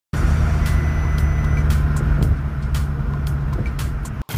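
Cabin noise in a moving VW Jetta MK5: a steady low engine and road drone, with irregular knocks through it. A thin high tone sounds for about a second near the start.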